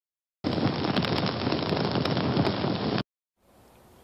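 Crackling fire sound effect, starting about half a second in and cutting off suddenly about three seconds in.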